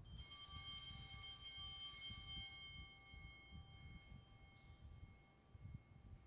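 Altar bell rung at the elevation of the consecrated host. It rings out suddenly and fades away over about four seconds, with a clear high metallic tone.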